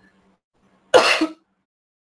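A person coughing once, a short harsh burst about a second in.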